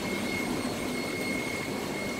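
Steady rushing drone of the aeration on live-seafood tanks: air pumps running and air bubbling up through the water, with a thin, constant high whine.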